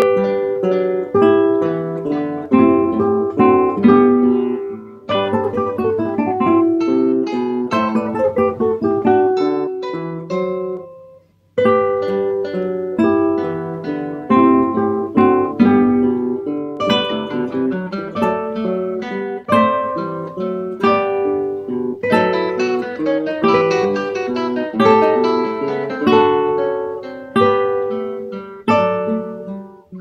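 A quartet of nylon-string classical guitars playing a menuet together, with plucked notes ringing and fading in interwoven parts. The playing breaks off briefly about eleven seconds in, then resumes.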